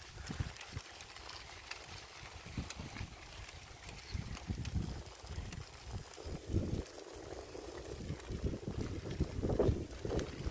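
Uneven low rumbling and bumping from a vehicle being ridden slowly over a rough grass-and-dirt field track, with a few faint rattling clicks.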